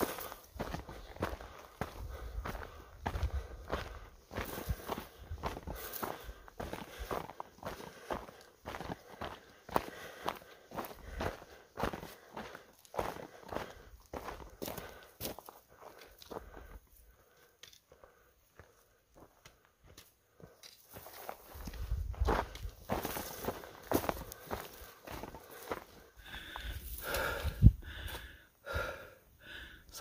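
Footsteps of a hiker walking on a dry dirt trail, crunching at an even walking pace. The steps go quiet for a few seconds past the middle, then resume.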